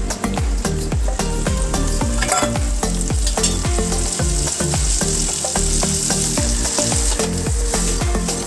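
Chopped onions, then tomatoes, frying and sizzling in hot oil in a kadai. A sharp clatter comes about two seconds in, and the sizzle grows brighter afterwards. A steady low beat, like background music, runs underneath.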